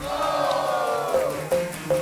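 Music: a held chord that sinks slightly in pitch and fades out after about a second, followed by a faint short tone.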